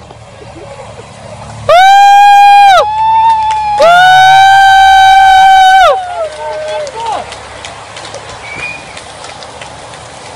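Spectators cheering the passing bike race: two loud, long, high-pitched whoops, the second about two seconds long, then a few fainter shorter calls.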